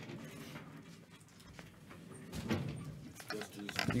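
Cardboard trading-card boxes being handled: a few light knocks and clicks in the second half, with faint voices in the background.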